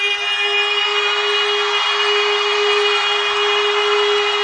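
Live concert audio: a single note held steadily without a break, over a thick, growing wash of crowd noise.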